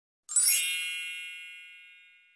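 A single bright chime sound effect. It sounds about a third of a second in, out of silence, and rings down steadily over about two seconds.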